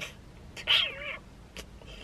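A dog's brief high whine with a wavering pitch, lasting about half a second.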